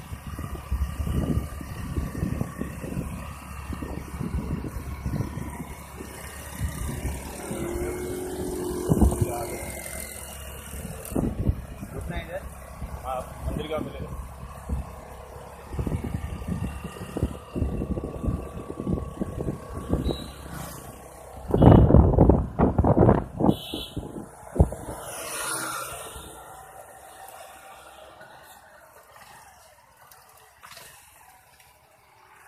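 Wind buffeting the microphone and road noise as an electric bicycle is ridden along a road. The rumble comes in irregular gusts, is loudest about two-thirds of the way through, and dies down near the end.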